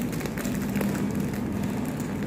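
A steady low mechanical hum, with light crinkles and rustles of plastic wrap being handled.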